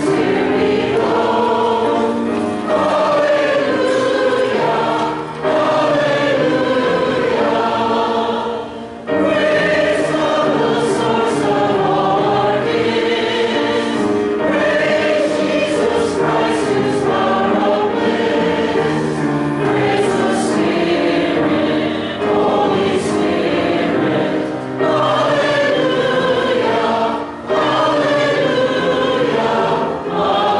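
A church congregation singing a hymn together, with short pauses between the sung lines.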